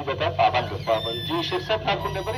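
Speech: a person talking continuously.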